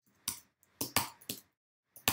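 Computer keyboard keystrokes: about four short, sharp key clicks at uneven intervals.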